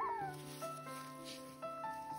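A short, falling squeak from a Solomon cockatoo right at the start, over background music.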